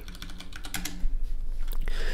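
Typing on a computer keyboard: a quick run of key clicks, thinning out a little past halfway, then a few louder keystrokes near the end.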